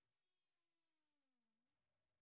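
Near silence: the sound track is all but empty.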